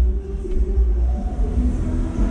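A steady, heavy low rumble with faint tones above it.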